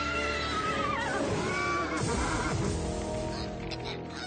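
A unicorn whinnying twice, a horse-like neigh that holds high and then falls, over dramatic background music.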